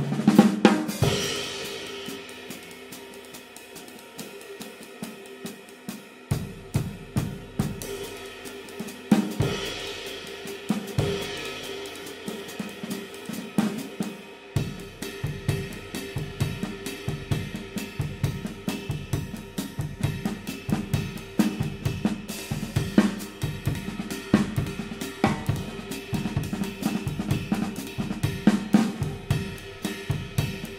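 Zildjian 20" K Constantinople Renaissance ride cymbal, a thin, dark, low-pitched jazz ride, played with a stick in a ride pattern and crashed, its wash building under each stroke. It starts with a loud crash and a few seconds of cymbal alone, then bass drum and snare join in and settle into a steady groove.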